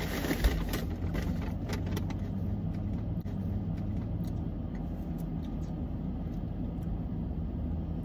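Car engine idling, a steady low hum heard from inside the cabin, with a soft thump about half a second in and light clicks and rustles in the first couple of seconds.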